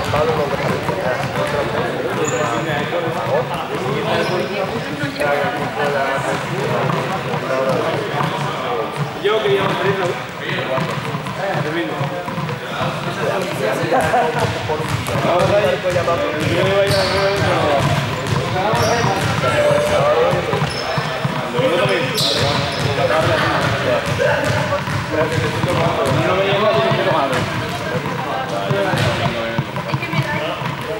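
Many voices chattering at once in a large, echoing sports hall, with balls bouncing and thudding on the hard floor at irregular moments.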